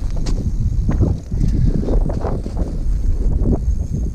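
Strong wind buffeting the microphone: a loud, uneven low rumble.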